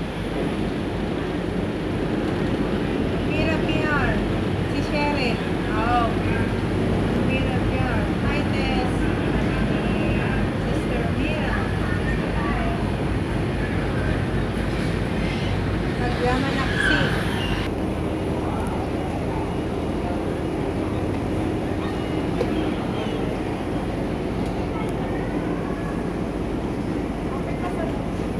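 Ferry engine running steadily with a constant low rumble and rush of water and wind as the boat pulls away from the pier. Indistinct voices of people chattering sound over it, mostly in the first half.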